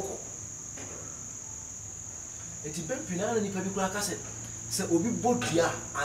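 A steady high-pitched whine with a low hum beneath it, heard alone at first; a man's voice talks over it from about halfway through.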